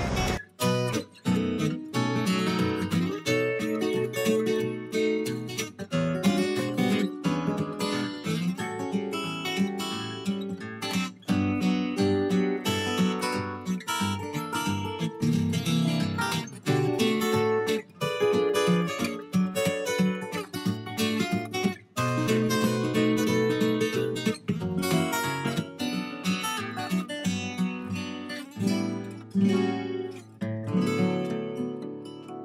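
Background music on acoustic guitar, plucked and strummed in a steady run of notes.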